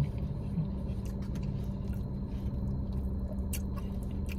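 Soft chewing of a mouthful of food, with a few faint clicks of a fork, over a steady low hum in a car cabin.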